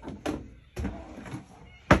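Hinged lid of a caravan cooktop lowered with a few soft creaks and scrapes, then shut with one sharp knock near the end.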